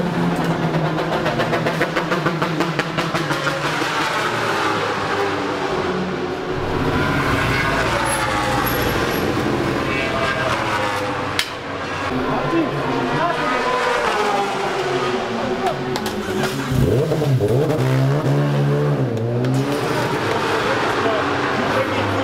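Racing motorcycle engines revving and passing, their pitch rising and falling again and again, with a louder engine holding a steady note just after the start and again late on.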